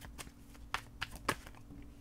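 Tarot cards being handled and drawn from the deck, with a few sharp card snaps and taps spread over two seconds, over a faint steady hum.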